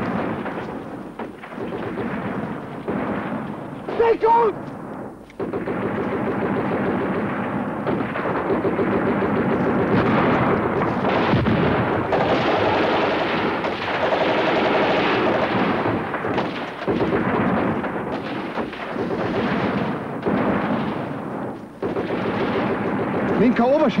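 Film battle soundtrack of continuous rifle and machine-gun fire with heavier detonations, dense and unbroken except for short lulls. A brief shout cuts through about four seconds in.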